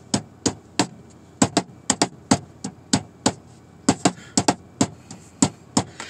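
A run of sharp percussive taps in an uneven rhythm, about three a second, kept up as a beat.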